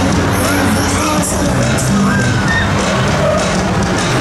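Loud music from a fairground ride's sound system, with riders whooping and cheering over it as the Huss Frisbee swings.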